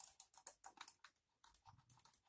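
Portronics POR-689 wireless mouse's plastic buttons clicked over and over under a hand: a quick, irregular run of light clicks, about six or seven a second.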